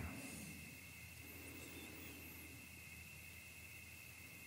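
Quiet pause between spoken sentences: faint steady background with a thin continuous high-pitched tone and a low hum underneath.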